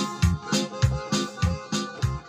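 Electronic keyboard playing an instrumental passage over a steady drum-and-bass beat, about three beats a second.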